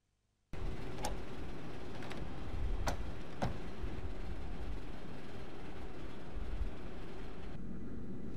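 Steady outdoor rumble and hiss of an airport apron beside a parked airliner, starting abruptly about half a second in, with three sharp clicks in the first few seconds. The hiss drops away near the end.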